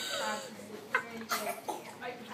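Voices ringing in an indoor swimming pool, with short coughs about a second in.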